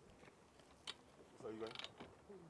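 Faint mechanical clicking and a short ratchet-like creak from the metal frame of a graveside casket lowering device: one sharp click a little under a second in, then a brief run of clicks near the end.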